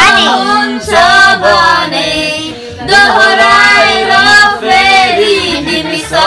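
A man and two women singing a song together, with a brief pause between lines about two seconds in.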